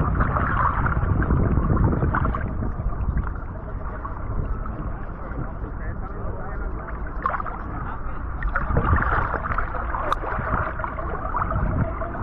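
Water sloshing and splashing against the hull of a swamped fishing boat, heard from a camera at the waterline, with a continuous low rumble.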